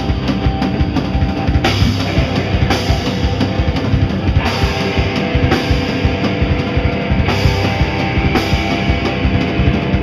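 Hardcore band playing live: a drum kit pounding and an electric guitar, loud and dense throughout.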